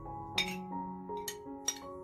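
A metal spoon clinking against a ceramic plate and a glass mug as grated lemon zest is scraped in: about three short, sharp clinks, the first about half a second in. Background music with held notes plays underneath.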